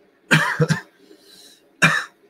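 A man coughing: a quick double cough, then a single cough near the end.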